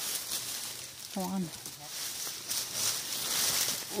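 Leaves and brush rustling and scraping in uneven swells as a hiker forces his way through dense undergrowth and vines.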